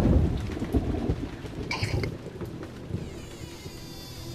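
A rumble of thunder that starts loud and dies away over a few seconds, over a steady hiss of rain.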